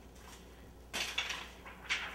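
Quiet at first, then a brief rustle of handled plastic about a second in, with another sharp rustle near the end, as a clear acetate cake-collar strip and its packaging are handled.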